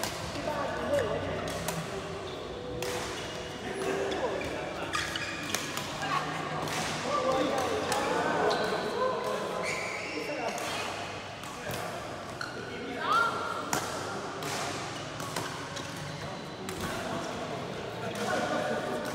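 Badminton rally: a string of sharp racket strikes on the shuttlecock, with players' footsteps on the court and voices in the background.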